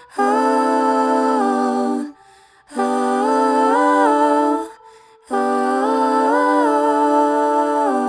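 Wordless humming vocal melody in three held phrases separated by short pauses, each phrase stepping up and down in pitch, with faint sustained tones carrying through the pauses.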